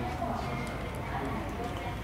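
Footsteps walking on a hard terminal corridor floor over a steady low hum, with faint indistinct voices in the background.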